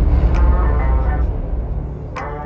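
A loud, low vehicle engine rumble that slowly fades, with voices and music mixed in underneath.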